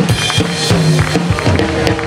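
Live blues band playing: electric guitars holding and bending notes over a steady drum beat.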